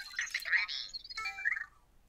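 Anki Vector robot's electronic chirps and beeps as it answers a voice command: a burst of short tones and warbles, then, after a brief pause, a second, shorter chirping phrase.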